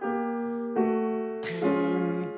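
Grand piano played legato, sustained notes and chords joined smoothly, with a new chord struck about every three-quarters of a second.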